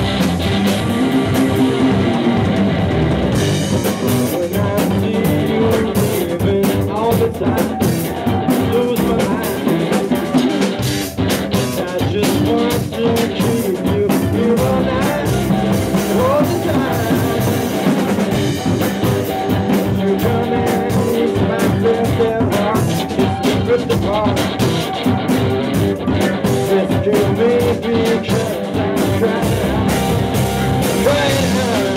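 Live rock band playing continuously: electric guitar, electric bass, drum kit and keyboard.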